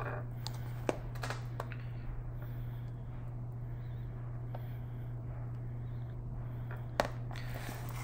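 A spoon spreading whipped topping around a ceramic plate: faint scraping with a few sharp clicks of the spoon against the plate, about a second in and again near the end, over a steady low hum.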